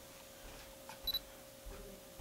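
Canon T3i DSLR giving one short, high electronic beep about halfway through, just after a soft click.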